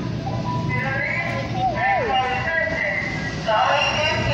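Background chatter of several people talking at once over a steady low rumble, with a short wavering high voice note about two seconds in.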